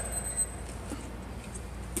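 Quiet room tone with a steady low hum and a couple of faint knocks.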